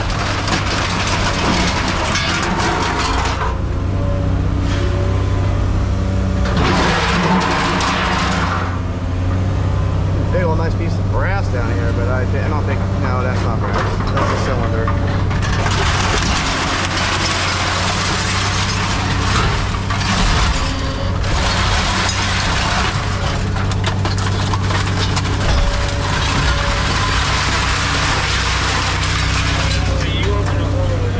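Diesel engine of a scrap material handler running steadily, heard from inside its cab, with stretches of rough hydraulic and scrap-metal noise as the grapple works the pile, the longest filling roughly the second half.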